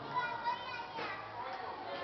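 Children's voices talking and calling out, with two short louder calls in the first half-second.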